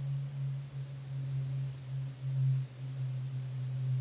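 A steady low hum that swells and fades a little in level, with no other distinct sound.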